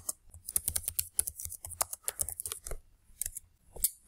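Typing on a computer keyboard: a quick, irregular run of key clicks, with a brief pause near the end before a few more keystrokes.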